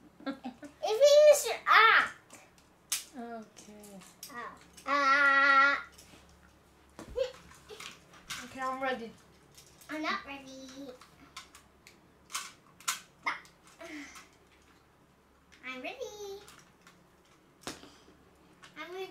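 Children's voices talking and calling out in snatches, with one long drawn-out vocal note about five seconds in and a few short clicks.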